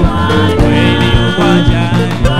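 A man singing a gospel song into a microphone over an instrumental backing with a steady beat.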